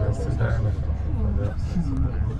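People talking in a crowded elevator car, over a steady low hum.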